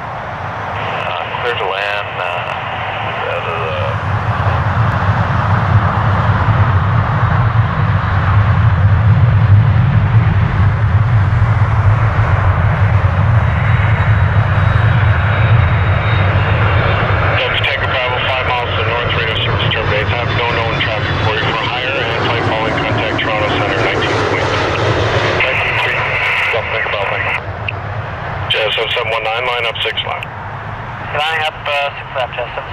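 Boeing 767 jet airliner on final approach with its gear down, flying over: a deep engine rumble that builds over the first few seconds, is loudest around the middle, then fades into a broader, thinner noise in the later part.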